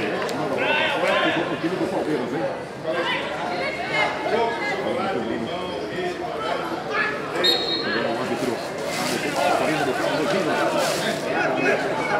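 Overlapping chatter of several men's voices at a small football ground, no single speaker clear.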